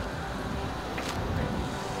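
Low, steady outdoor background rumble in a pause between words, with a faint click about a second in.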